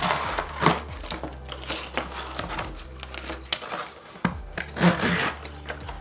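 Unboxing handling noise: a cardboard box flap opened and a bundle of clear plastic LED light tubes and their wires pulled out onto a wooden table, with irregular rustling, scraping and light clicks, loudest just under a second in and again about five seconds in.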